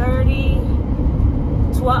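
Steady low rumble of a parked Ram ProMaster cargo van's engine idling.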